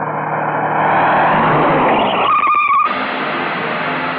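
A car approaching on a paved road, its engine and tyre noise growing louder, then a short tyre screech a little past two seconds in as it brakes hard. A lower engine sound carries on afterwards.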